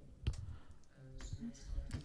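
A short pause in a woman's speech, picked up by her lapel microphone: a few faint clicks near the start and again near the end, and a brief faint sound of voice a little past the middle.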